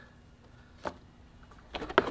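A plastic car fender liner being handled, giving a single light click about a second in, then a quick cluster of clicks and knocks near the end, the last the loudest.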